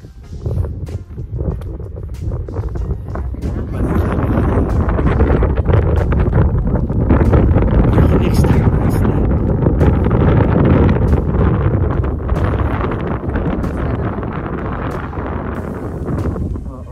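Strong wind buffeting a phone microphone as a heavy low roar. It builds a few seconds in, is loudest in the middle and eases toward the end, with brief handling clicks.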